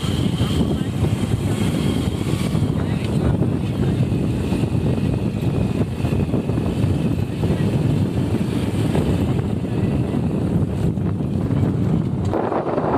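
Steady wind rushing over the microphone of a moving motorcycle, with the engine running under it.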